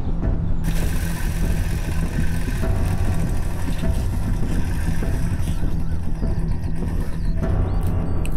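Motorcycle engine running as the bike rides in, over steady background music.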